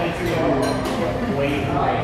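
Voices of people talking in the background, a steady stream of conversation with no single speaker standing out.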